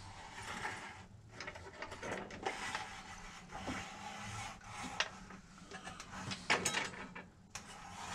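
Irregular scraping and rustling handling noise with a few sharp clicks as a large, fully rigged wooden model ship is turned round on its stand.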